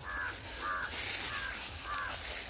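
An animal calling four times in quick succession, short harsh calls about half a second apart.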